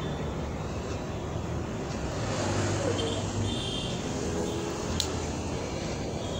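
Fabric scissors cutting through black lining cloth, heard as a continuous rasp over steady background noise, with one sharp click about five seconds in.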